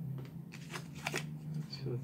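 Boxed action figure being handled and tilted: a few light clicks and rustles of the cardboard-and-plastic packaging, over a steady low hum.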